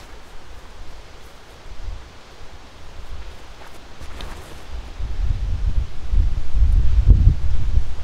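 Wind on the microphone: a low rumble with rustling that grows much louder about five seconds in.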